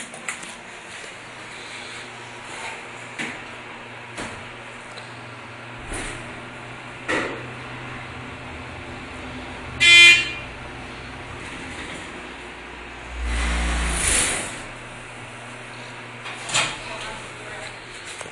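Thyssenkrupp hydraulic elevator riding up one floor, with a steady low hum from the pump motor through the ride. A single loud chime sounds about ten seconds in as the car reaches the floor, followed a few seconds later by a low rumble lasting about a second and a half.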